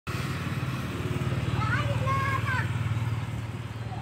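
A small engine idling steadily with a low, even pulse, with a child's voice calling over it about halfway through.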